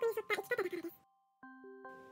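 A voice narrating in Japanese over soft music-box background music. The voice stops about a second in, and after a brief pause the music-box notes ring again.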